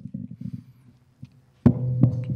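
Handheld microphone being handled as it changes hands: low rubbing rumbles, then a sharp knock about one and a half seconds in, after which a steady low hum sets in.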